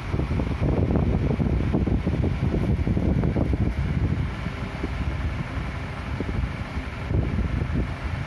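Steady rushing air noise with a fluttering low rumble, moving air buffeting the microphone.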